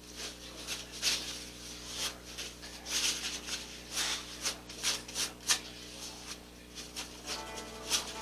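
A wad of paper towel wiping and rubbing a small square glass mirror tile, a quick, irregular series of short swishing strokes.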